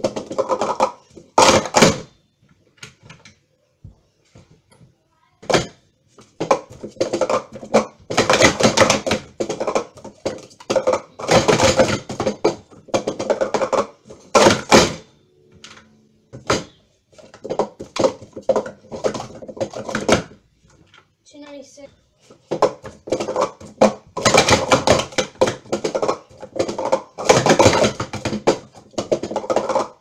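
Hard plastic sport-stacking cups clattering in rapid bursts of clicks and clacks as they are stacked up into pyramids and swept back down, with brief pauses between sequences.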